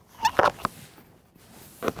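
Small plastic toys clicking and rustling as a hand rummages through a plastic treasure chest full of them: a few sharp clicks early on, then a soft rustle near the end.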